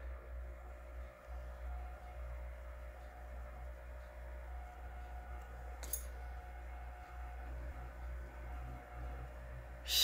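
Quiet room tone: a steady low hum with a faint whine that comes and goes, and a single sharp click about six seconds in.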